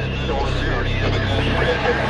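Film soundtrack: a low steady drone with faint voices over it.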